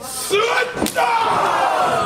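One hard slam on the wrestling ring mat a little under a second in, with voices shouting.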